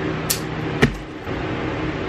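Electric fans running steadily with a hum, broken by two brief handling noises: a short swish about a quarter second in and a sharp knock just under a second in.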